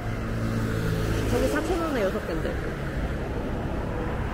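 Road traffic on a wide city street: vehicles driving past with a steady low engine hum, strongest in the first second and a half. Voices of nearby pedestrians are heard over it.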